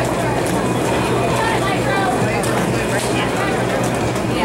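Indistinct voices and crowd chatter echoing in a large hall, over the steady rolling rumble of quad roller skates on a wooden rink floor, with a few short clacks.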